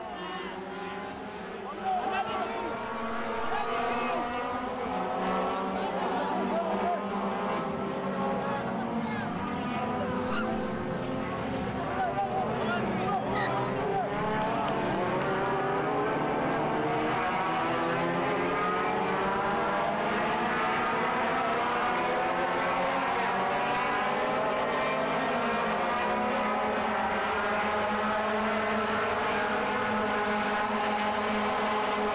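A motor engine running steadily, its pitch drifting slowly up and down. It gets louder about two seconds in and then holds a steady level.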